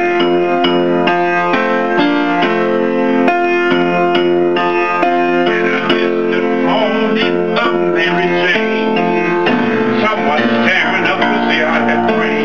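Piano music with chords held on steady notes and a voice over parts of it, most clearly from about six seconds in and again near the end.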